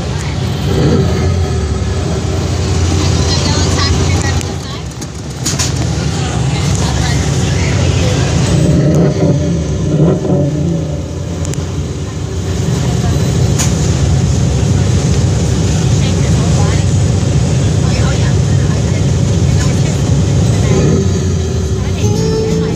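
Radiator Springs Racers ride vehicle moving along its track with a steady low rumble, briefly quieter about five seconds in, with people's voices mixed in.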